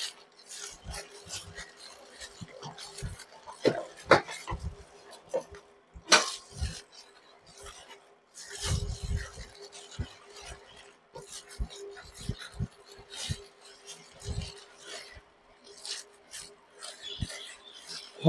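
Plastic-gloved hands rubbing and patting crispy-fry flour onto a whole red tilapia in a stainless steel bowl: soft, irregular rasping with occasional light knocks against the bowl.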